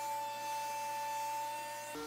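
Faint, steady hum made of a few held tones, with the tones changing abruptly near the end. No tool is running.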